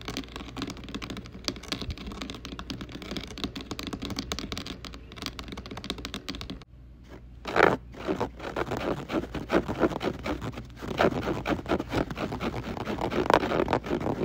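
Fast, dense tapping and scratching added over mimed hand movements as fake ASMR triggers, not made by the nails touching anything in the picture. A brief lull comes about seven seconds in, and then the tapping and scratching comes back louder and busier.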